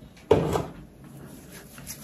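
A single sudden clunk about a third of a second in, from a hard object knocked or set against a surface while things are handled, followed by a few faint clicks.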